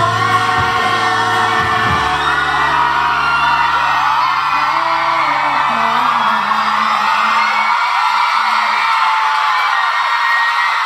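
A male singer sings a Thai-language song live into a microphone over a backing track, with fans whooping. About two seconds in, the backing's bass drops away, leaving lighter accompaniment as the song winds down to its end.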